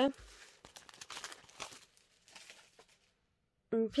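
Faint crinkling and rustling as a stack of printed scrapbooking paper sheets and their clear plastic bag are handled, in small scattered crackles for about three seconds.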